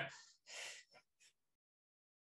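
A short, breathy exhale through the nose or mouth, like a stifled laugh, about half a second in; otherwise near silence.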